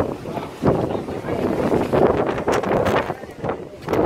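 Wind buffeting the microphone in uneven gusts, a rushing rumble that swells and dips.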